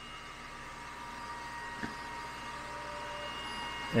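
xTool D1 Pro laser engraver's stepper motors driving the head across the extension-kit gantry while it reruns the engraving job after homing: a steady mechanical whine with a few held tones, slowly growing a little louder, with a faint tick about two seconds in.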